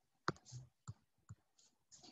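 A few faint, sharp clicks about half a second apart, the first the loudest, with short scratchy sounds between them. They are clicks and taps on a computer's pointing device as a highlighter tool is picked and a tick mark is drawn.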